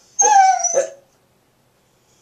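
Border collie howling along ("singing"): one short howl under a second long that slides down in pitch, with a thin high whine above it.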